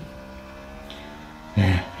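Racing motorcycle engine heard from the onboard camera, its pitch rising steadily as the bike accelerates while leaned into a corner. A man's voice cuts in near the end.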